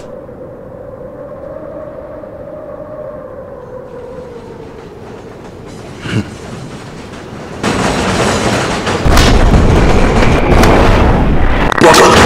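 Film-style sound effects with no music: a low rumbling drone with a faint, slowly falling tone, a single sharp click about six seconds in, then a loud rushing roar that builds from about eight seconds and grows louder a second later.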